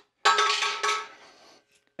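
A mallet strikes the end of a screwdriver twice, about half a second apart, driving the handle pin out of a Pentair multiport valve diverter; each blow rings briefly with a metallic tone.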